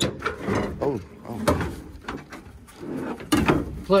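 A few sharp knocks and clunks from parts and panels being handled inside an old pickup truck's cab, with indistinct talk in between.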